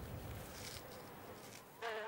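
Faint buzzing of a sand wasp over a low hiss, with a louder pitched buzz starting near the end.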